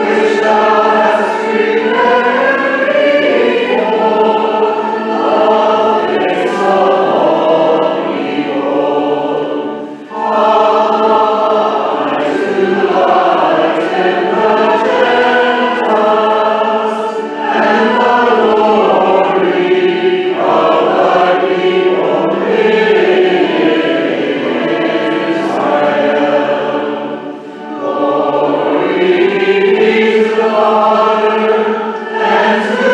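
A group of voices singing a hymn in long phrases, with brief breaks between phrases about ten seconds in and again near the end.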